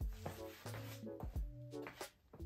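Background music: a bass line with a deep beat about every two-thirds of a second and short held melodic notes.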